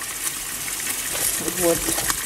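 Kitchen tap water running in a steady stream into a stainless steel pot of cauliflower florets, filling it.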